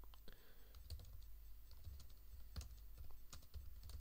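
Faint typing on a computer keyboard: a run of irregular keystrokes as a shell command is entered.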